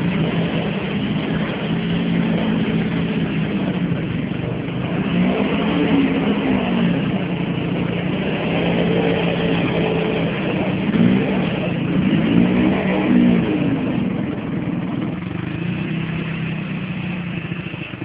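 Dinli 450 quad's engine revving up and dropping back over and over as the quad sits stuck in deep mud.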